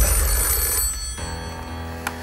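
Telephone bell ringing in a short burst that starts suddenly and dies away about a second in, over a low steady music bed.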